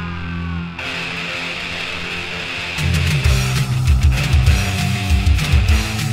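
Punk rock recording in an instrumental passage, led by distorted electric guitar. About three seconds in it gets louder, as a rhythmic, descending low riff comes in with steady drum hits.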